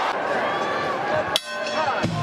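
Arena crowd noise with indistinct voices of the broadcast commentary. About one and a half seconds in, a single sharp click is followed by a brief dip in loudness.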